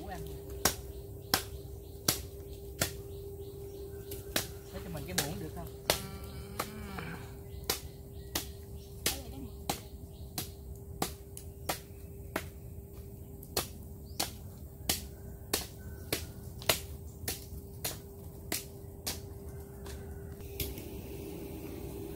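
Machete chopping into nipa palm fruit segments: a long run of sharp, separate strikes, irregular, about one or two a second, as the fibrous husks are split open to get at the flesh.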